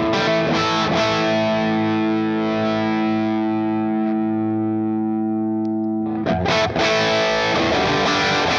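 Strat-style electric guitar with a slightly overdriven tone played through a J. Rockett Airchild 66 compressor pedal: a few picked notes, then a chord left ringing steadily for about four seconds, then new strums about six seconds in.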